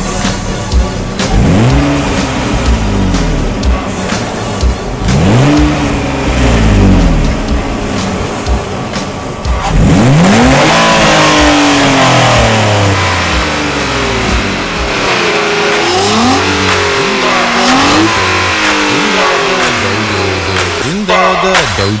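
Nissan Altima 3.5SE's V6 with a Fujita intake, revved hard while stationary and heard from behind at its dual exhaust tips. Three long revs rise and fall in pitch, the third held high the longest, followed by several quicker, shorter throttle blips.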